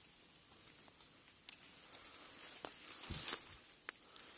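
Footsteps and rustling on dry fallen leaves of a forest floor, fairly quiet, with a few sharp clicks and a soft low thump in the second half.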